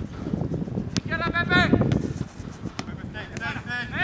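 Footballers calling and shouting to each other during an outdoor training drill, with two sharp ball strikes, one about a second in and one near three seconds.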